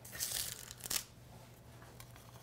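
Crispy baked egg-roll-wrapper rolls crackling and rustling as they are handled and set onto a platter: a short crackle near the start, then a brief tap about a second in.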